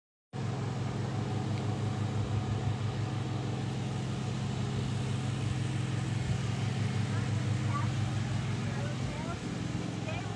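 Steady low mechanical hum of a running motor or engine, easing slightly near the end, with faint voices in the last few seconds.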